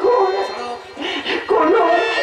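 A performer's high voice in drawn-out, pitch-bending sung or cried phrases over musical accompaniment, dropping away about half a second in and coming back strongly near the end.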